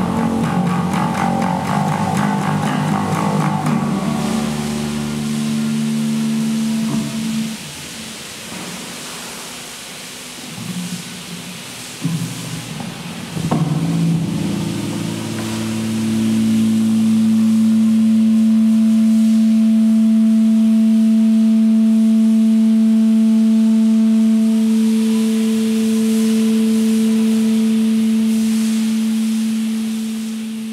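Electric bass through a small amplifier: a few ringing plucked notes, then a pause with scattered quieter sounds. About halfway in, one low tone starts and holds steady, fading near the end.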